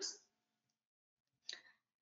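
Near silence in a pause between sentences of a woman's speech, broken by one brief, faint click about one and a half seconds in.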